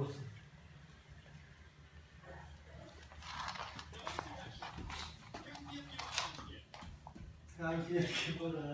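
Scuffling and rustling of a Dalmatian and a Bengal cat play-fighting on the floor, with faint vocal sounds; a louder, wavering call starts just before the end.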